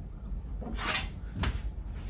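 A short metallic scrape followed by a sharp knock as a golf club is released and lifted out of a bench-mounted lie-angle measuring gauge.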